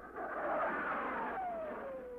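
F-104 Starfighter jet flying past: the rushing noise of its J79 turbojet swells up and fades away, with a whine that falls steadily in pitch as it goes by.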